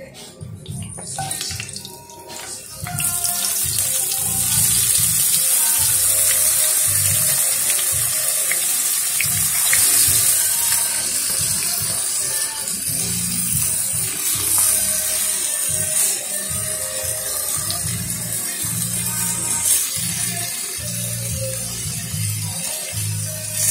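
Marinated beef strips with onion and green chile sizzling in hot oil in a frying pan; the loud steady sizzle starts suddenly about three seconds in, as the meat goes into the pan. Background music plays underneath.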